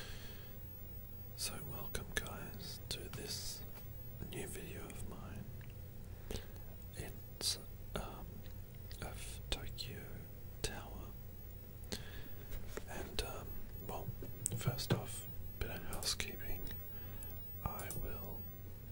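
A man whispering close to the microphone in short, breathy phrases, over a low steady hum.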